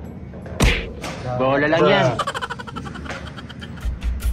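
A sharp knock of pool balls about half a second in. Then comes a player's short shout that rises and falls in pitch, followed by a quick rattling run of sounds.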